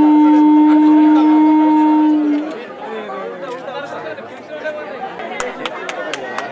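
A loud, steady, low horn-like tone held for about two and a half seconds, then trailing off with a slight drop in pitch, over crowd chatter. A few sharp clicks come near the end.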